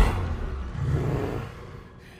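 Film sound effects: a deep boom at the very start, then a low rumble that fades out about a second and a half in.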